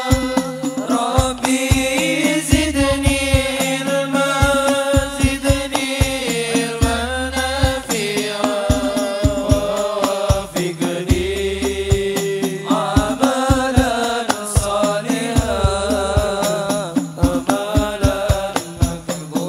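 Indonesian sholawat, an Islamic devotional song, sung in Arabic by male voices holding long, slowly moving notes over a steady hand-drum beat. The sung words are a prayer asking God's forgiveness and help in doing good deeds.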